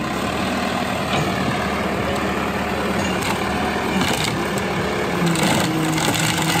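Case 580 Super L backhoe loader's diesel engine running under load as its front loader bucket lifts a wooden ramp, its note shifting about five seconds in. A few knocks from the ramp's timber sound over it.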